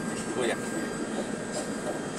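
Steady engine and road noise inside the cab of a loaded Volkswagen 24.280 tanker truck driving on a dirt road.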